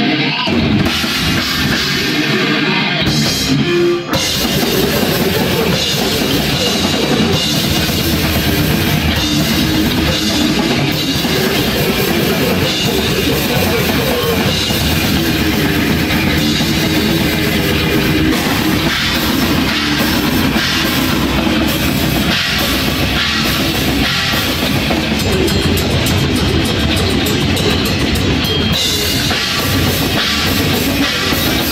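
Live death metal band playing at full volume: heavily distorted electric guitar riffing, with the bass and a fast drum kit coming in fully about four seconds in and running on steadily.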